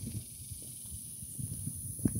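Quiet outdoor background: a steady high hiss with faint, irregular low thumps of footsteps and phone handling.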